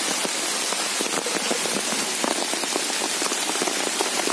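Steady rain falling on trees and wet leaf litter, a constant hiss dotted with many small drop ticks.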